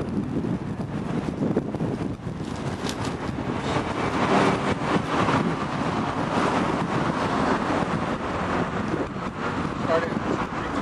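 Road traffic going by, swelling around the middle, with wind buffeting the microphone.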